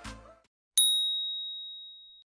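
Beat music fades out, then a single high bell-like ding strikes about three quarters of a second in and rings down slowly: an interval-timer chime marking the end of an exercise set.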